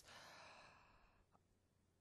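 A soft breath by a speaker at a microphone, fading out over about a second, then near silence.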